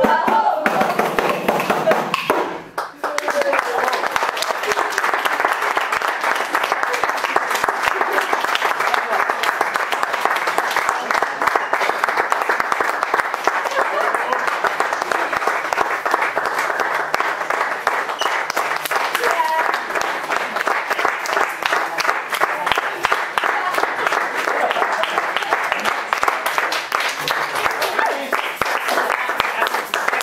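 A group's singing ends about two seconds in, then an audience applauds steadily for the rest of the time, with voices mixed into the clapping.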